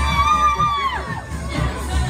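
A woman's long, high-pitched cheering shout, held for about a second and falling away at its end, over dance music with a steady bass beat.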